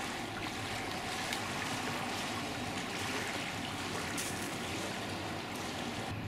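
Small waves lapping at a pebble lakeshore: a steady wash of water with faint small splashes against the stones.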